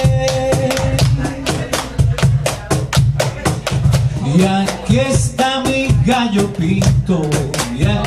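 Live band playing an upbeat groove: drum kit and hand percussion keep a fast, even beat over electric bass. About halfway through, a sliding wordless melody joins in.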